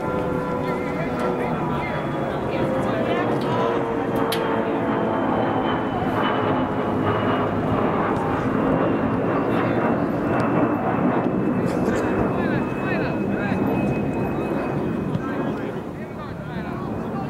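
An aircraft passing over, a steady engine drone whose pitch slowly falls throughout, louder than the surrounding field noise.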